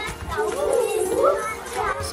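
Several young children talking and calling out over one another while they play.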